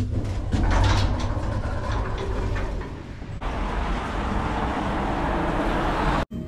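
Small old hotel lift running: a low rumble with rattles and clicks. About three and a half seconds in, a sudden cut to a steady hiss of outdoor street noise.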